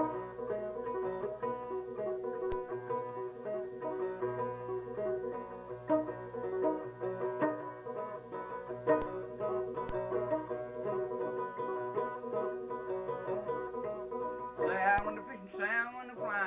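Clawhammer-style old-time banjo playing a square-dance tune, with a quick, even run of picked notes. A man's voice starts singing near the end.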